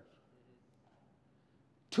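Near silence in a pause between a man's spoken phrases, with his voice starting again at the very end.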